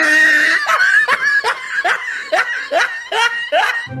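High-pitched laughter: a held squeal, then a quick run of short rising 'ha' bursts, about two to three a second, that cut off abruptly near the end.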